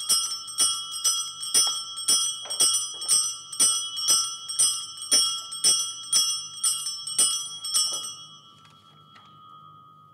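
Altar bells shaken in quick repeated rings, about two a second, marking the blessing with the Blessed Sacrament in the monstrance. The ringing stops about eight seconds in and the last ring fades away.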